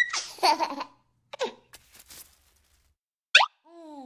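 Cartoon baby's voice: a surprised 'ooh' and short giggly sounds in the first second and a half. Near the end comes a quick rising whistle-like sound effect, then a falling tone.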